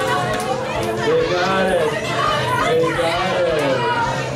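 A group of teenage girls cheering and calling out excitedly in many overlapping voices, celebrating a correct answer.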